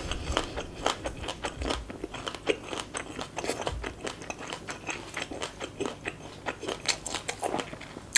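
Close-miked chewing of crunchy shredded green papaya salad, a steady run of many small irregular crunches.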